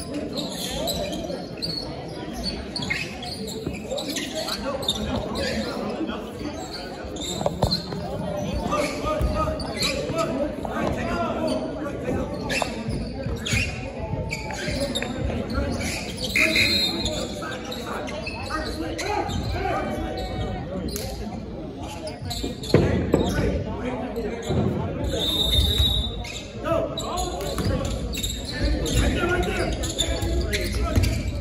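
Basketball bouncing on a hardwood gym floor, with people talking and the echo of a large indoor gym.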